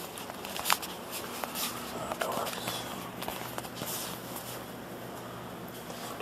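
Footsteps on a tiled shop floor, with scattered clicks and light rustles and a sharper click about a second in, over a steady low hum.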